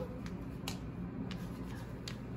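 A few light, sharp clicks, spaced roughly half a second apart, over a low steady room background.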